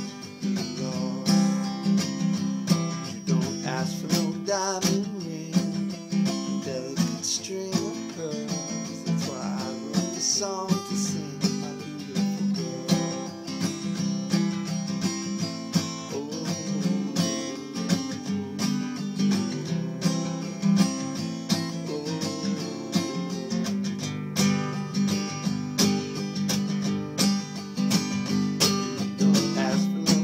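Acoustic guitar strummed in a steady rhythm, an instrumental passage of a song.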